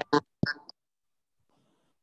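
A few short, choppy fragments of a voice coming through a video-call connection, cut off within the first second, then dead silence.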